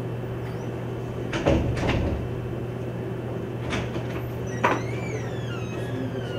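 Marker drawing on a whiteboard: a few scrapes and taps of the pen tip, then near the end a thin squeak that rises and falls in pitch as a curved stroke is drawn. A steady low hum runs underneath.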